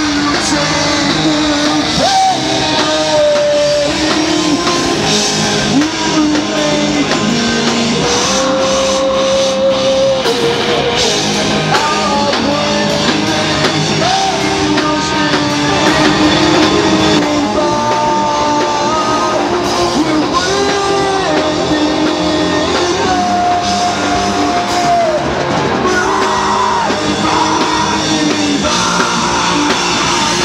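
Heavy rock band playing live: a male singer holds long notes, one after another, over guitars and a drum kit, with no break in the music.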